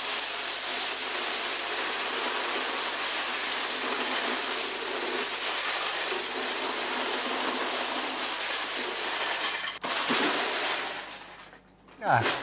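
Thousands of plastic dominoes toppling in one continuous dense clatter as a domino-built Christmas tree collapses. The clatter breaks off briefly about ten seconds in, comes back for a moment, then dies away.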